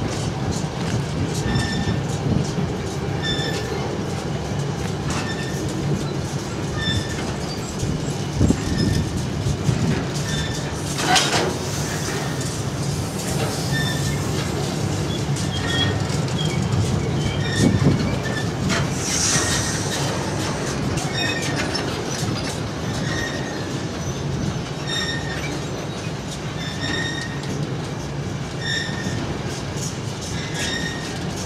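Intermodal freight wagons carrying curtain-sided swap bodies rolling steadily past on steel wheels, a continuous clattering rumble with short high squeaks that recur about every two seconds.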